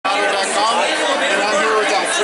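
Speech: a man talking, with other voices chattering behind.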